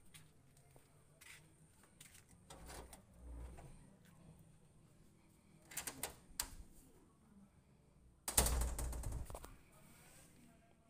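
A wooden door being unlatched and opened, with a scattering of quiet clicks and knocks. A louder noise lasting about a second comes near the end.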